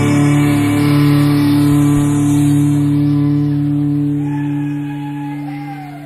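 A live five-piece rock band (guitars, bass, keyboards) holding the song's final sustained chord. The chord begins fading about four seconds in and dies away, with a faint bending note over the fade. It is a board recording on the soundman's cassette.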